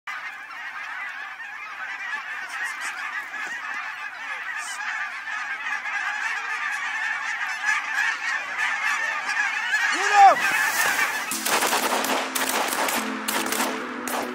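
A large flock of geese calling in flight, a dense, unbroken din of honking from many birds at once. Music comes in about three seconds before the end.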